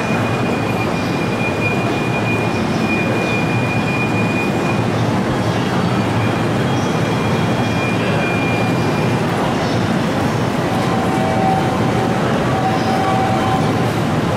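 Seibu 30000 series electric commuter train standing at the platform, its equipment running with a steady noise. A thin high whine sounds for the first few seconds, and a lower tone comes and goes near the end.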